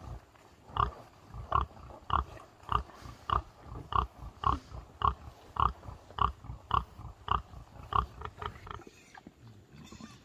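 A sow grunting in a steady rhythm, about one short grunt every half second or so, stopping about nine seconds in. This is typical of the nursing grunts a sow makes while her piglets suckle.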